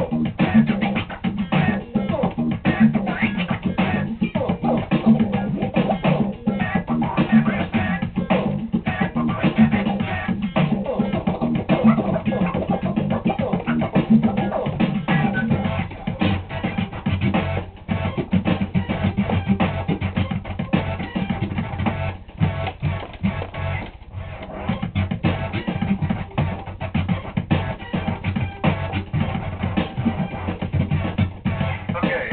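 Turntablist scratching a vinyl record by hand on a turntable, cutting it back and forth in quick rhythmic strokes over a backing track with bass.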